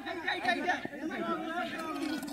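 Several men's voices talking and calling out over one another at once, overlapping chatter with no single speaker standing out.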